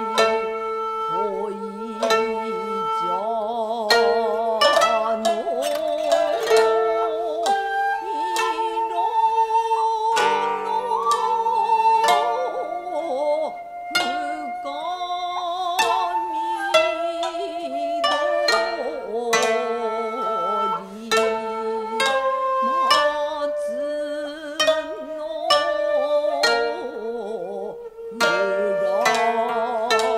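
Traditional Japanese koto music in the Yamada-ryū sōkyoku style: a continuous run of plucked notes, many of them bent or wavering in pitch.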